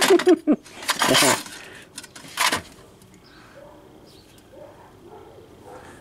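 Loose steel nuts, bolts and small parts clinking and rattling as a hand rummages through a metal toolbox tray, louder in the first couple of seconds and then faint and scattered. A short laugh trails off at the very start.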